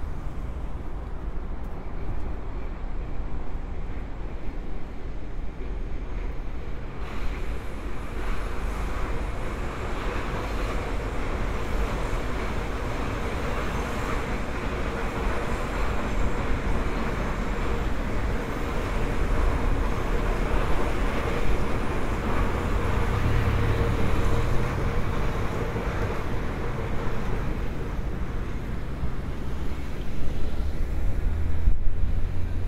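City road traffic: a steady wash of cars passing on a multi-lane street, getting louder after about seven seconds. A deeper engine rumble, as of a heavier vehicle going by, swells a little after twenty seconds in.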